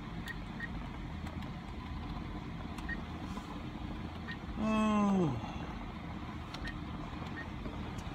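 Steady low rumble of a car idling, heard from inside the cabin. About five seconds in a man gives a short groan that falls in pitch.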